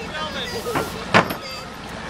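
Motorboat engine running at low speed, a steady low hum, with a brief sharp noise about a second in.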